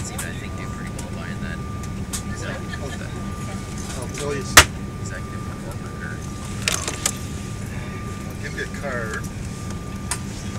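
Steady cabin hum of an Embraer E-170 regional jet standing at the gate, a low drone with a thin steady whine above it. A single sharp clack sounds about four and a half seconds in, and a few lighter clicks follow around seven seconds.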